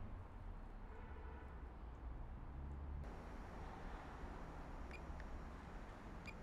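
Faint low background rumble with no clear source, with a few faint clicks about five seconds in.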